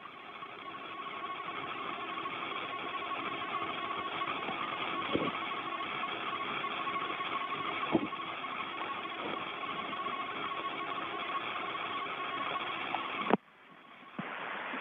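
Open space-to-ground radio channel from the Soyuz: steady static hiss with a steady whistle tone and a few clicks, cutting off suddenly near the end as the channel closes.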